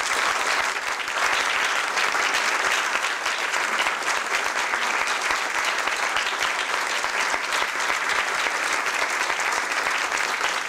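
Audience applauding steadily, a dense, even clapping of many hands that holds at one level throughout.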